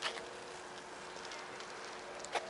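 Faint outdoor background noise with a steady low hum and a short click at the start.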